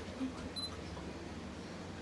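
A single short, high beep from a handheld digital camera, typical of its autofocus confirmation, about half a second in, over a quiet low hum. A brief low murmur of a voice comes just before it.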